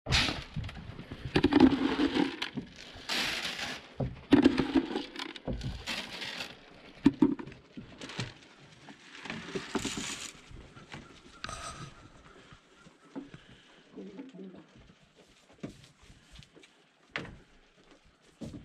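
Grain feed poured from a plastic bucket, rattling into a plastic trough in several bursts over the first ten seconds or so. Knocks and clatters come throughout as goats jostle at the trough.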